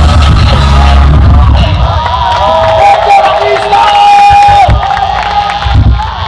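A live rock band plays loudly with the crowd cheering and whooping. About two seconds in, the band's heavy low end drops away, leaving long held vocal notes over the crowd noise as the song winds down.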